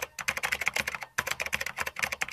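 Rapid computer-keyboard typing clicks, about a dozen a second, with a brief break about a second in; an edited-in typing sound effect.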